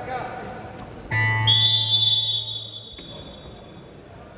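Wrestling scoreboard buzzer sounds for about two seconds, starting about a second in, to stop the bout. A shrill high tone rides over it and fades out just after the buzzer cuts off.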